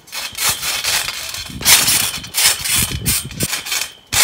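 Garden trampoline's springs and mat working under repeated bounces and a front handspring: a series of uneven noisy bursts.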